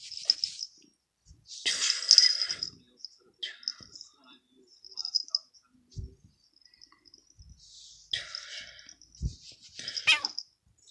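A person's breathy, voiceless laughter in several short bursts, the strongest about two seconds in. Two soft low knocks come near the middle and toward the end.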